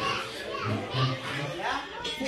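Several people talking at once, children's voices among them.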